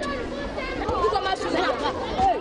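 Many children's voices at once, shouting and chattering as they play in a schoolyard.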